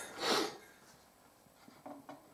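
A short breath through the nose, rising and falling over about half a second near the start, then a few faint light knocks near the end as the finned heatsink is held against the rack case.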